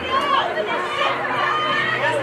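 Several people shouting and calling over one another at an outdoor soccer game: players on the field and spectators on the sideline, with no single clear voice.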